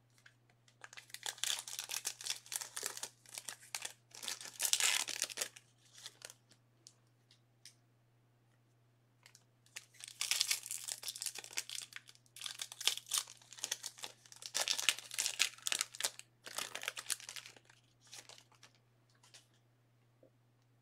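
Plastic wrapping being crinkled and torn, in two long spells of handling: one starting about a second in, the other about ten seconds in. A steady low electrical hum runs underneath.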